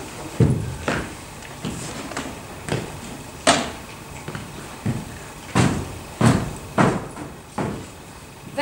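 A series of about a dozen irregular knocks and thumps on a wooden stage floor as a performer moves about and handles props.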